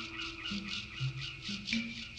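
Film score music: a low bass line under a high percussion stroke repeating about four times a second, with a held tone fading out in the first second.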